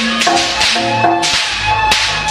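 Live jaranan gamelan accompaniment playing a repeating metallic melody, cut through by about five sharp, bright cracks or crashes.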